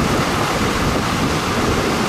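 Wind blowing on the microphone: a steady rushing noise with an irregular low rumble.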